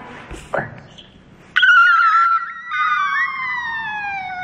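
A woman's long, high scream of excitement, starting suddenly and held, slowly falling in pitch.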